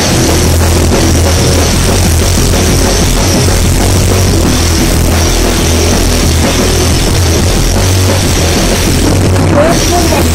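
Rock band playing loud and without a break: a drum kit with electric guitar and bass.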